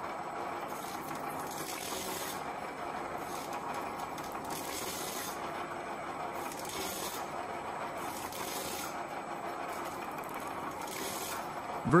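A radial tyre shredder running steadily while strips of tyre rubber are pushed through its toothed rotating cutter, with short scraping bursts every second or two as the rubber is cut.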